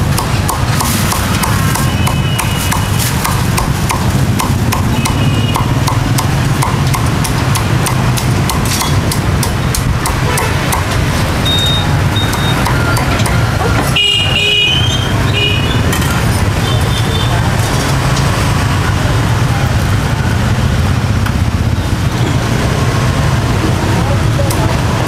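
Meat cleaver chopping roast pork on a thick wooden chopping block: a fast run of sharp chops, densest in the first half and again near the end, over a steady low background hum.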